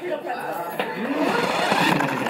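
Several people's voices talking over one another, growing louder about a second in.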